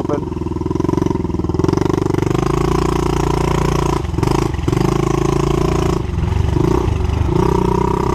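Pit bike engine running as it is ridden along a trail, its note rising and falling with the throttle. The note cuts back briefly twice about halfway through.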